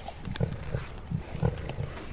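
Lions growling in a run of short, low growls while feeding on meat from a kill, with a few sharp clicks among them.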